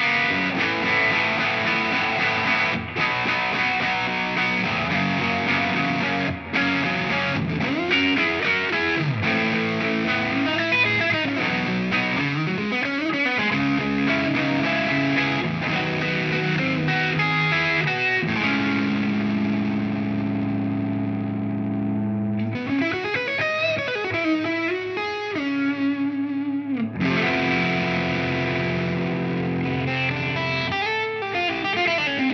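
Gibson Custom '59 Les Paul Standard electric guitar played through an amp with distortion: a lead line with several string bends. About two-thirds of the way through, one note is held and rings out, its brightness fading, before the playing picks up again with more bends.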